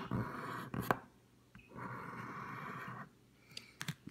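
Scratch-off lottery ticket being scratched, its coating rubbed off in two stretches: a short one at the start, then after a brief pause a steadier one of about a second and a half.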